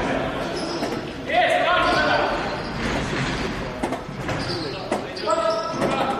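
Indoor football game in a sports hall: the ball being kicked and bouncing on the court, shoes squeaking on the floor, and two loud shouts from players, one about a second in and one near the end, all echoing in the hall.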